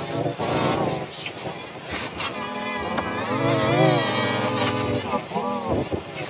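Heavily processed 'G-Major' effect audio: several pitch-shifted copies of a wavering, voice-like sound layered over each other, their pitch rising and falling, with scattered sharp clicks.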